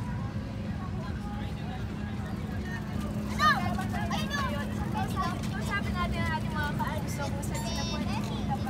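Children's high voices shouting and calling out over a steady low hum. One loud shout comes about three and a half seconds in, followed by more overlapping calls and chatter.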